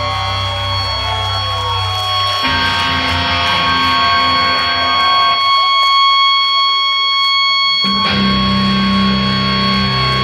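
A metal band playing live, electric guitars holding long, steady ringing chords. The bass drops away about two and a half seconds in, thins almost to nothing in the middle, and comes back in heavily about eight seconds in.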